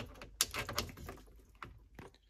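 A few sharp clicks and light taps from hands working the plastic valve fittings on an underfloor heating manifold, growing fainter toward the end.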